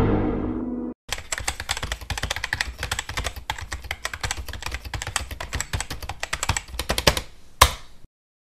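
A music sting fades out over the first second. Then a rapid clatter of computer-keyboard typing, a sound effect for on-screen text being typed out, runs for about six seconds and ends with one sharp click near the end.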